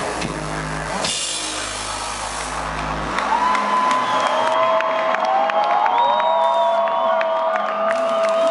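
A rock band plays live loud with drums and deep bass until about three seconds in, when the bass cuts out. The audience then cheers, with long high whoops and screams.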